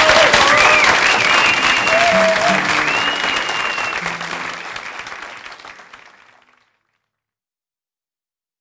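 Live audience applauding as a song ends, with a few voices rising over the clapping. The applause fades and stops dead about six and a half seconds in.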